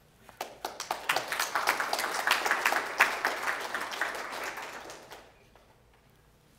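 Audience applauding: many hand claps start about half a second in, build up, then thin out and stop about five seconds in.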